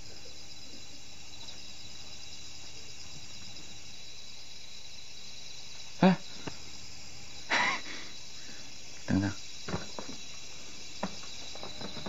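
Crickets chirping steadily in the background, with a sharp click about six seconds in and a few short, soft sounds after it.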